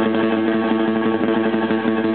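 Live blues band playing a guitar-led instrumental intro, loud and continuous, with a long steady held note or chord sounding over it.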